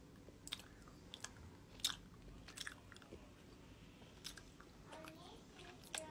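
A person chewing and biting a crunchy snack: faint, irregular crunches and mouth clicks, one louder crunch a little under two seconds in.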